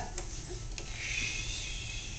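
A manual wheelchair being turned on the floor: a few faint light clicks from its frame and wheels, then a soft high squeak lasting about a second.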